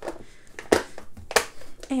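Two sharp plastic clicks about half a second apart, from the latching lid of a snap-lock plastic container being snapped shut, amid light handling.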